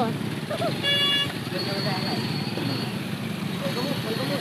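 A vehicle horn sounds once, a short single-pitched toot of about half a second, about a second in.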